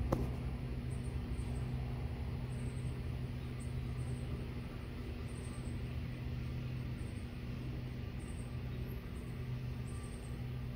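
Steady low machine hum throughout, with short high-pitched chirps repeating about once a second over it, and a single click at the very start.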